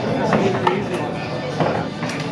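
Pool balls knocking on a bar table: two short, sharp clicks within the first second as the rolling cue ball strikes the cushion and then an object ball. Low room chatter and background music run underneath.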